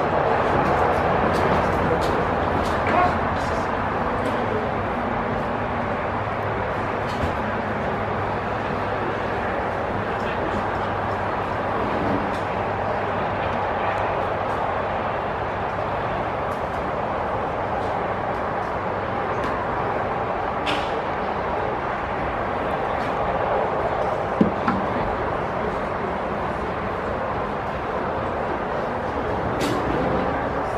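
Indistinct chatter of spectators over a steady background hum, with a few short sharp knocks, the loudest about three quarters of the way through.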